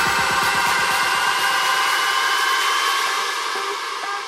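Electronic dance music dropping into a breakdown. The kick-drum beat fades out, leaving a hissing noise sweep with a slowly rising tone. Short plucked synth notes begin near the end.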